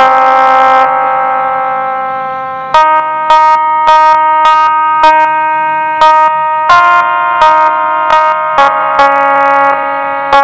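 Casio SA-11 electronic mini keyboard playing a song melody one note at a time with sustained tones. A note is held for about three seconds, then notes are re-struck about twice a second, changing pitch twice near the end.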